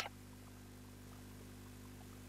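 Faint steady electrical hum with light hiss: background tone only, with no music playing yet.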